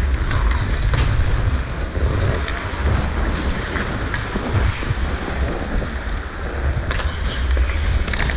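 Wind buffeting a body-worn GoPro's microphone as the wearer skates, with a steady low rumble, over the hiss of skate blades on ice. A few short clicks of sticks or puck cut through, one clearer about seven seconds in.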